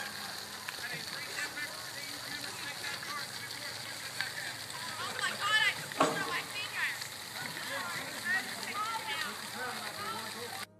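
Distant children's voices shouting and calling out over a steady outdoor hiss, busiest a little past the middle, with one sharp click about six seconds in.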